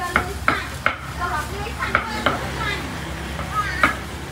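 Slices of pork sizzling on a street grill, with about six sharp, irregular metal clacks as tongs turn the meat on the grate.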